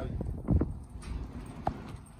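Footsteps on a hard pavement: a few separate knocks, the loudest about half a second in, over a low outdoor rumble.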